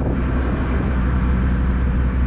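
Car ferry's engines running under way, a steady low drone, with wind and water noise over it.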